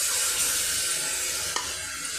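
Thick curry masala of onion, ginger-garlic and tomato paste with spices sizzling steadily in hot oil in an aluminium pressure cooker, fried down until the oil has separated. A single sharp tap comes about one and a half seconds in.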